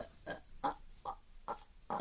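A man making about five short wordless vocal noises in a row, quieter than his talk, a scornful sound standing in for the end of his verdict on a song.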